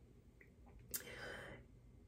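Near silence: quiet room tone, with a faint soft hiss, like a breath, for under a second starting about a second in.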